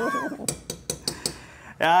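A man's high laugh at the start, then about six quick light clinks of a metal spoon against a steaming pot of boiling soup. A man starts speaking near the end.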